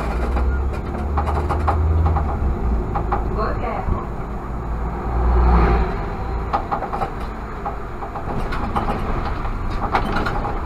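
Irisbus Citelis CNG city bus running, heard from inside the driver's cab: a low engine and drivetrain rumble that swells and eases with the throttle, with frequent rattles and clicks from the bodywork.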